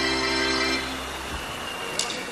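A sustained electronic keyboard chord held steady, then released about a second in, leaving a fading tail.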